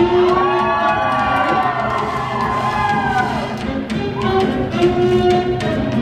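Up-tempo quickstep ballroom music playing over the hall's loudspeakers with a fast, steady beat. For the first three seconds or so, spectators cheer and call out over it.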